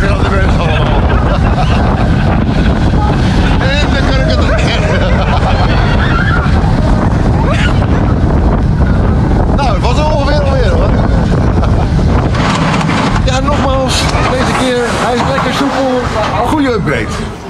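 Steel roller coaster on-ride: the train rumbling loudly along the track with wind rushing over the microphone. Riders laugh and shout over it, more so near the end.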